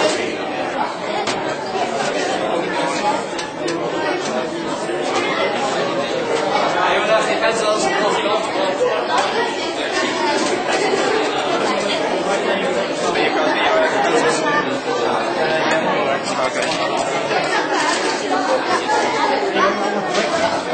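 Busy room chatter: many children's voices talking over one another at once, with no single voice standing out.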